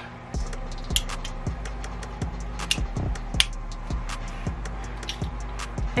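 Background music with a steady beat: deep bass kicks about every three quarters of a second and sharp ticks between them, coming in about a third of a second in.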